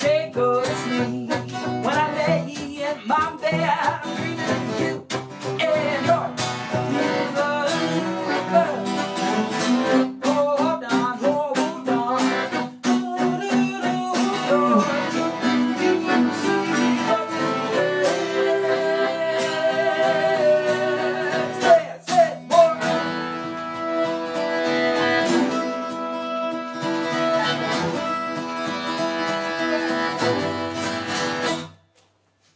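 Acoustic folk trio of strummed acoustic guitar, piano accordion and bowed cello playing a song, with a man singing in places. About two-thirds of the way through the music drops briefly with two sharp hits, then goes on with longer held chords.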